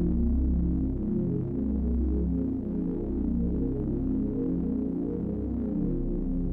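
Electronic music played live on a synthesizer keyboard: a shifting pattern of low, overlapping notes over long, deep bass notes.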